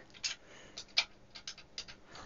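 Front-panel keys of an Advantest R6142 DC voltage/current source clicking as they are pressed in quick succession to step the output voltage up toward 20 V; the loudest click comes about a second in.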